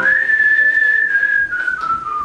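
A man whistling a tune: one clear note held high for about a second and a half, then stepping down in pitch twice.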